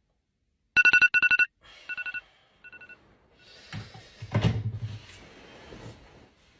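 A phone alarm going off: a rapid burst of loud beeps about a second in, then two shorter, fainter beeps. Then bedding rustles and a heavy thump as someone jumps out of bed.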